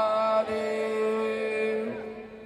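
A chanted devotional mantra: one voice holds a long sung note, drops to a lower note about half a second in and holds it until near the end, over a steady drone.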